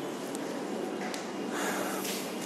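A man's breath into a handheld microphone, swelling about one and a half seconds in, over steady hiss, with a couple of faint clicks.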